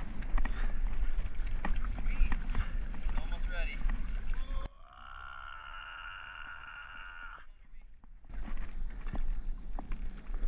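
Wind buffeting the microphone and water sloshing around a paddleboard at sea. From about five seconds in to about eight the sound turns dull and muffled, with only a steady hum left, as when the camera dips into the water, before the wind and water return.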